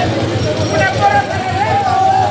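Voices of people in the street, unclear and not close, over the steady hum of a running vehicle engine.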